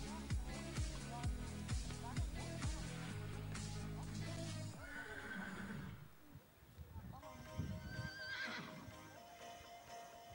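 Pop music with a steady beat breaks off about halfway through. In the quieter stretch after it a horse whinnies, the call wavering in pitch, about eight seconds in.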